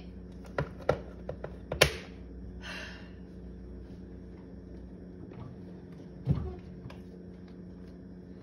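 Dishes and kitchenware being handled and put away: a quick run of sharp clinks and knocks in the first two seconds, the loudest near two seconds in, a short rattle just after, and a dull thump about six seconds in. A steady low hum runs underneath.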